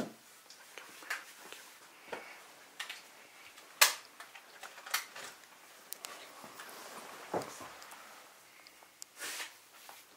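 A few light knocks and clicks of cups and small objects being handled, the sharpest about four seconds in.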